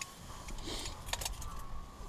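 A few small sharp clicks and light knocks of gear being handled, about a second in, over a faint steady hum.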